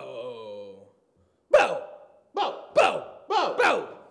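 A man's voice: a drawn-out vocal sound, then after a short pause five short, loud anguished cries, each falling in pitch.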